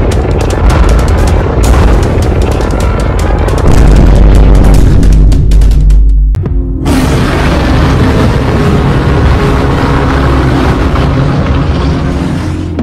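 Cartoon sound effects of two energy beams clashing over loud music: crackling at first, then a heavy, deep boom that cuts off suddenly about six seconds in. Music with sustained notes carries on afterwards.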